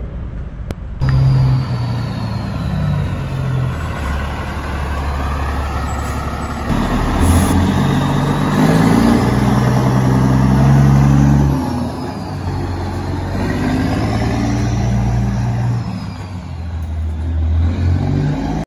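Semi truck's diesel engine running loudly and pulling under throttle, its note stepping up and down a few times.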